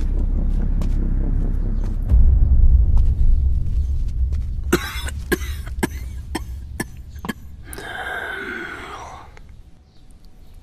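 A low rumble over the first few seconds, then a person coughing: a quick run of short coughs, then one longer cough near the end.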